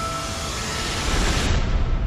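Title-sequence sound effect: a deep whooshing rumble with a faint held high tone, the opening of the closing theme music.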